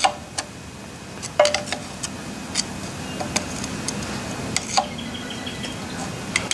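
Scattered light metallic clicks and knocks, one about a second and a half in with a short ring, as the lock and adjustment collars on a Churchill Redman metal shaper's feed shaft are rocked by hand: the knock of a bit of free play, which the owner isn't sure is excessive.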